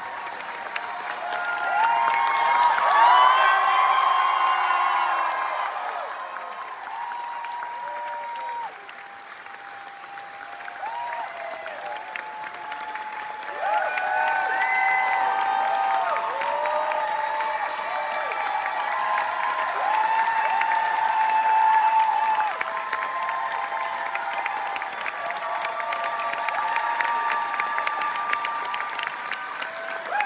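Theatre audience applauding with dense clapping and shouts and cheers over it, loudest about two to five seconds in and again from about fourteen to twenty-two seconds.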